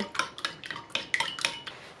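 A metal spoon beating eggs in a ceramic bowl, clinking against the bowl in quick, even strokes, about six a second, getting fainter toward the end.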